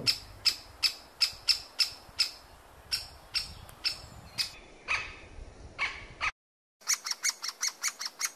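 Great spotted woodpeckers calling: short, sharp notes repeated about two to three times a second, with a couple of lower, harsher notes just past the middle. After a brief drop-out near the end the calling resumes faster, with a nestling calling open-beaked from the nest hole.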